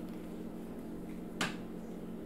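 A steady low hum of room tone, with a single sharp click about one and a half seconds in.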